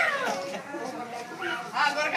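Children's high voices and chatter, with one long call falling in pitch right at the start and shorter calls near the end.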